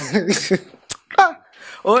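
A man laughing, then a short cough about a second in.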